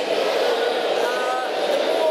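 A woman speaking over steady background noise.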